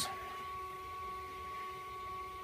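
XYZprinting Da Vinci Duo 3D printer giving a low, steady hum with a constant high-pitched whine as it starts up, with no distinct movement noises.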